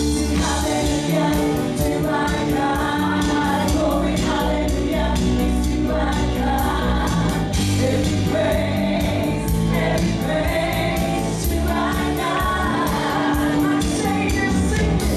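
Live gospel worship song: women singing into microphones over a church band of electric bass, keyboard and drums, with a steady ticking beat on the cymbals.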